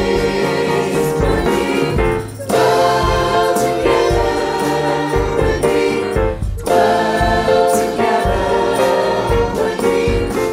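Mixed choir of men's and women's voices singing a slow song in harmony, with brief pauses between phrases about two and a half and six and a half seconds in.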